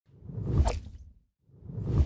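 Whoosh sound effects for an animated logo intro. The first swells and fades within about a second, and after a brief silence a second whoosh builds up near the end.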